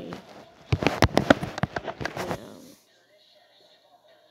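Handling noise: a rapid, irregular run of loud clicks and knocks from fingers and a plastic Lego minifigure rubbing and bumping right against the camera's microphone, stopping under three seconds in.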